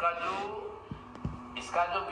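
A pause in a man's talk: faint voice sounds at the start and again near the end, with two soft low thumps about a second in.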